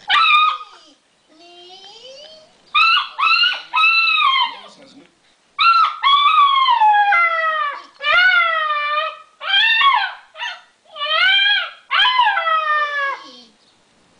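Alaskan malamute puppy howling and 'talking': a string of about eight high, wavering yowls that rise and fall in pitch, set off by a creaking door in a TV commercial. Quieter rising creaks sound between the calls.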